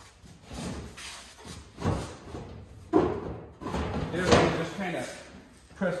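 A loose sheet-metal replacement quarter panel for a 1969 Mustang fastback being pushed and knocked against the car body as it is offered up for fitment, giving several bangs and rattles.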